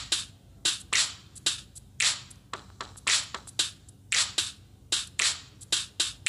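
Rhythmic hand percussion: sharp snapping hits, about two to three a second in a syncopated beat, played alone with no pitched instrument, over a faint low hum.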